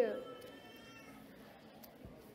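A short, high vocal cry that slides steeply down in pitch right at the start, then fades into faint room noise.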